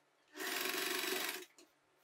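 Domestic electric sewing machine running one short burst of fast stitching, about a second long.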